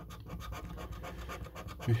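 Rapid scratching strokes rubbing the coating off a lottery scratch card's panel, starting abruptly.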